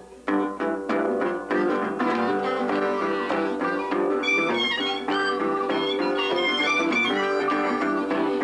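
Acoustic blues guitar strumming a driving rhythm. About halfway through, two blues harmonicas join in with bent, wavering notes.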